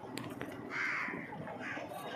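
A crow cawing: one loud hoarse caw about a second in, then a shorter call near the end, over a steady background hum.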